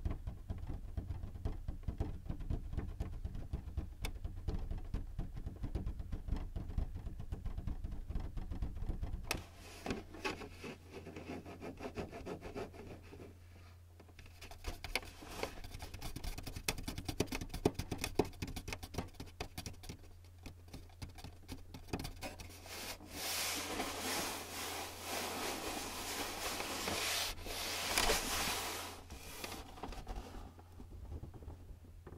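Fingertips tapping and drumming on the plastic housing of a Canon PIXMA printer, with a heavy thudding close to the microphone. After about nine seconds this gives way to scratching and rubbing across the casing, which grows louder and rougher in the last several seconds.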